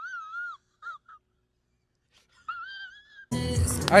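A thin, high-pitched wavering tone in three short phrases with silence between them, from an inserted film clip.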